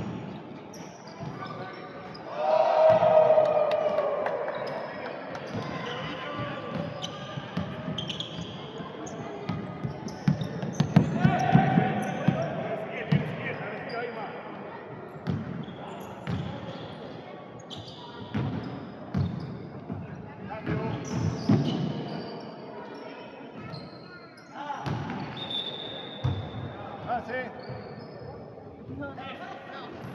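Basketball game play on a wooden court: the ball bouncing in repeated dribbles, sneakers squeaking, and players calling out, loudest about three seconds in and again near the middle.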